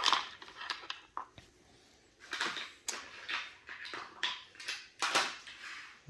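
A fixed-blade knife snapping into a hard plastic sheath with one sharp click, followed by scattered clacks and scrapes as the sheathed knife and other hard gear are handled and set down on a hard floor.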